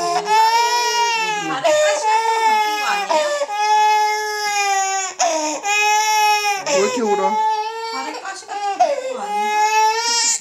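A baby girl of about one year crying hard: about six long, high wails with short catching breaths between them. It is a cry of pain; the adults are asking where it hurts.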